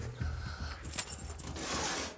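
A bunch of keys jangling briefly about a second in, followed by a rustling hiss.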